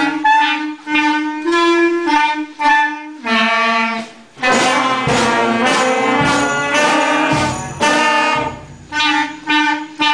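Student concert band of woodwinds and brass playing a passage of short detached notes over a held low note, the sound thickening into fuller ensemble chords through the middle.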